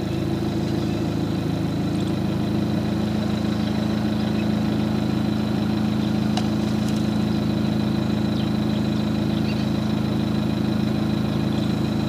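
A vehicle engine idling steadily close by while the vehicle stands still, with a thin, steady high whine over it. The sound cuts off suddenly at the end.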